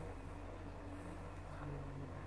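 Quiet room tone: a faint steady low hum with light background hiss and no distinct events.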